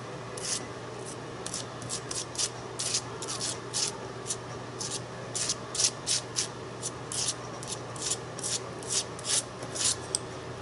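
Metal palette knife scraping and spreading modeling paste across card, in short quick strokes, about two to three a second.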